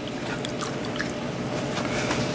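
Fingers swishing in a small dish of water, with faint dripping and light splashes, over a steady room hum.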